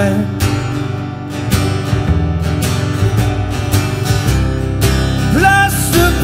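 Acoustic guitar strummed over an upright double bass in a short instrumental passage between sung lines; the singer's voice comes back in near the end.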